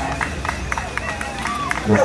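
Background chatter of onlookers' voices with a run of short ticks, and a man's voice beginning an announcement at the very end.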